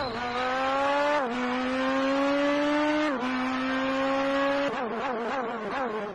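Car engine accelerating through the gears: its pitch climbs steadily and drops sharply at each upshift, three times, then wavers up and down near the end.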